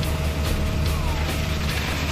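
Background music laid over a loud, steady rumble from a fire truck's pump engine and the rush of its water-cannon jets.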